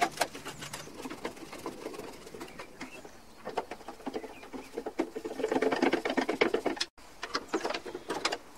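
Rapid small clicks and metallic rattles from screwdriver work and sheet-metal engine tinware being fitted onto an air-cooled VW Beetle engine, with a denser burst of clatter near the end that breaks off suddenly.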